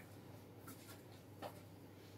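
Near silence, with a few faint short rustles and ticks from sheer organza fabric being handled, the clearest about one and a half seconds in.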